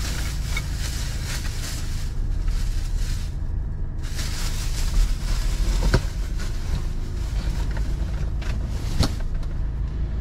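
A plastic shopping bag rustling and a few knocks as things are moved about inside a car cabin, over a steady low rumble.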